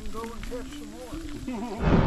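People's voices chattering faintly. About two seconds in, this gives way suddenly to a loud, low rumbling noise.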